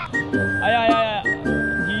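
Background music, with a man's drawn-out, wavering cry of pain about half a second in and another beginning near the end.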